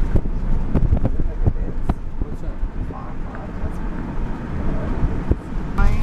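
Low, steady road and engine rumble from inside a moving car, with wind buffeting the microphone and a few sharp knocks in the first two seconds.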